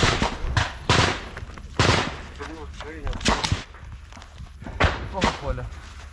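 Gunfire in a trench fight: a string of sharp single shots at uneven intervals, about seven in six seconds, two of them in quick pairs, with faint voices between them.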